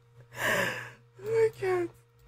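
A woman's long breathy laughing sigh, followed by two short voiced sounds.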